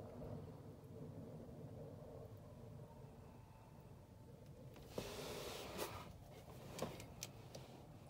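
Faint outdoor background noise, with a brief hiss about five seconds in and a few faint clicks near the end.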